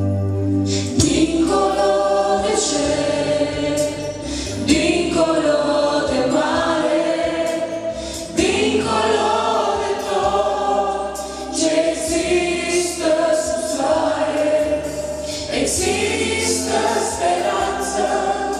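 Church worship team and choir singing a Romanian gospel song, male and female voices amplified through handheld microphones.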